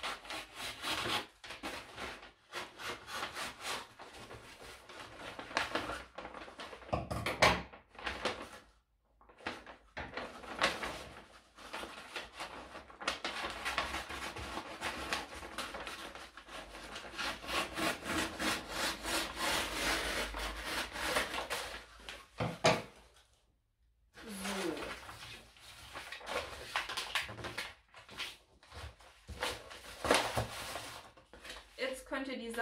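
Scissors cutting through glossy gift-wrapping paper, with the paper rustling and crinkling as it is cut, lifted and handled. Two sharper, louder sounds stand out, about seven and about twenty-two seconds in.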